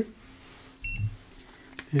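Electronic lab balance giving one short high beep as it tares to zero, with a soft low knock at the same moment.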